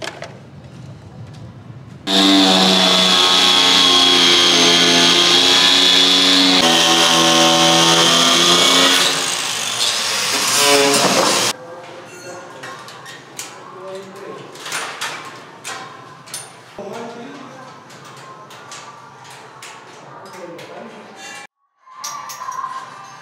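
A power tool motor runs loud and steady for about nine seconds, with a rise in pitch just before it stops. After it stops, a quieter stretch of work sounds follows: scattered knocks and taps of tools on metal and concrete.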